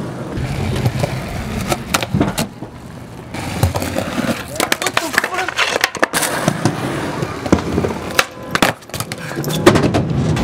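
Cheap Walmart skateboard on rough concrete: wheels rolling with a gritty rumble, broken by sharp clacks of the tail popping and the deck knocking down onto the ground several times, loudest near the end.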